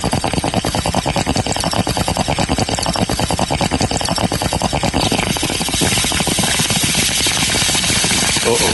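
Bong hit sound effect: water bubbling rapidly and steadily through a bong during one long pull, turning hissier in the second half.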